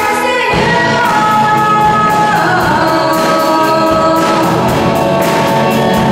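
A live rock band playing a pop song: a girl singing into a microphone over electric guitar, bass and a drum kit with steady cymbal strikes, heard through the reverberation of a large hall.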